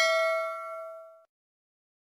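Notification-bell chime sound effect ringing with several clear tones and fading out about a second in.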